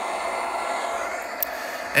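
Steady hiss of video-tape static playing back from a laptop, the audio of a transfer showing snow where the picture is lost.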